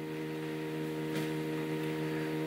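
A steady electrical hum made of several fixed tones, like mains hum picked up in the recording, with a faint click about a second in.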